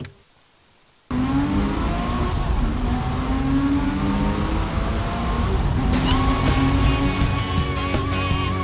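A car engine starts suddenly about a second in and accelerates hard, its pitch climbing. From about six seconds in, the song's music comes in over it. There is a short click at the very start.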